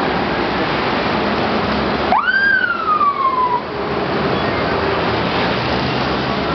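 A single siren whoop about two seconds in, rising quickly and then sliding down over about a second and a half, over steady street traffic noise.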